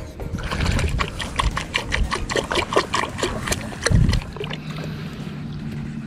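Water dripping and trickling at the edge of a pond, a string of small irregular drips and splashes. A dull thump comes about four seconds in, followed by a steady low hum.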